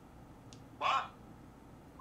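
A single short questioning word, "뭐?" ("What?"), spoken once with a rising pitch, with faint room tone around it.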